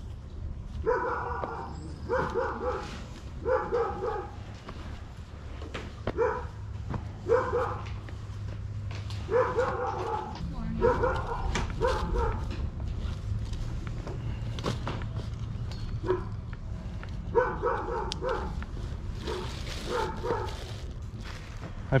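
A dog barking in short runs of two or three barks, on and off throughout.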